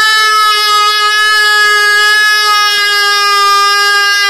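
A woman's voice holding one long, loud, high note on an open vowel at a steady pitch.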